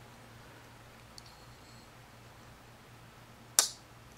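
RJ Martin Q36 flipper knife flipped open: a single sharp ka-chunk near the end as the blade snaps out and locks up. A faint tick comes about a second in.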